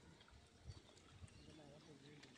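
Near silence: faint outdoor ambience with faint distant voices and two soft low thumps about halfway through.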